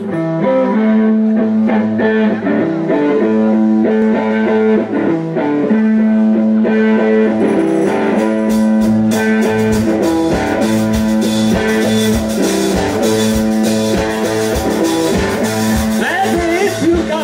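Live blues-rock band playing an instrumental passage: an electric guitar riff over bass guitar and a drum kit. The drums and cymbals come in harder about halfway through.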